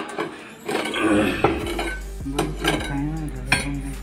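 A steel rod clinks and knocks against an electric motor's metal body as the motor is levered into position: several sharp metallic knocks. A steady low hum comes in about a second in.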